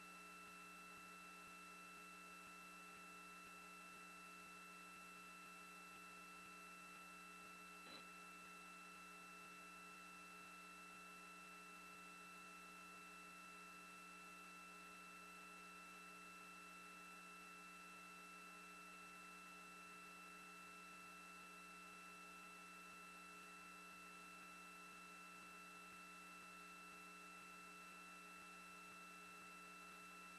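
Near silence: a faint steady hum made of several fixed tones, with one faint tick about eight seconds in.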